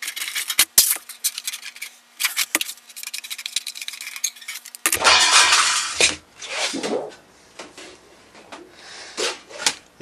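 Shears cutting sheet metal along a scribed line: a dense, rapid run of sharp metallic clicks over a steady hum, stopping about five seconds in. Softer rustling and flexing of the cut sheet follows.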